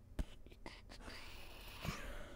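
A sharp click, then a man's faint whispered muttering under his breath, with a soft knock near the end.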